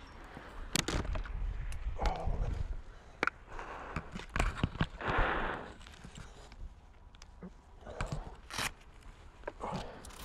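Scattered knocks and clicks with bursts of crackling rustle from dry grass and brush, picked up by the helmet camera of a motorcyclist who has crashed off the road into roadside vegetation. No engine is heard.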